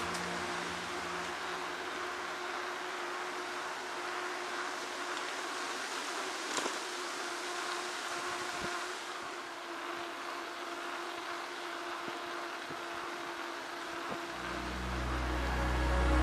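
Steady rolling and wind noise of a mountain bike riding on an asphalt path, picked up by a handlebar-mounted camera. A low rumble builds near the end.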